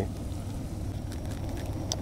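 Steady low rumble of a propane camp-stove burner running under a frying pan, with faint crackles from the frying fish.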